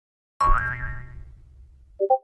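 A comedic 'boing' sound effect hits about half a second in, a rising twang over deep bass that dies away over about a second and a half.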